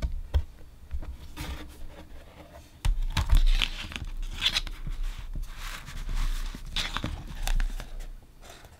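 A vinyl LP being handled with its paper inner sleeve and cardboard jackets: a click at the start, then several short rustles and scrapes of paper as the record and sleeve are moved and laid down, with a low handling rumble in the second half.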